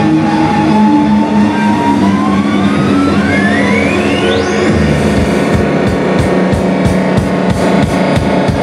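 Live hardcore punk band: loud, distorted electric guitar drones while a single high tone slides steadily upward in pitch. About five seconds in, the drum kit comes in with a fast beat and the full band plays.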